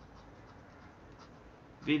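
A few faint, light clicks and scratches from work at a desk, then a man's voice starting just before the end.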